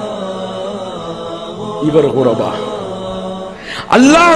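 A man's voice chanting in long, drawn-out melodic notes that glide slowly up and down, with a faint steady low drone underneath.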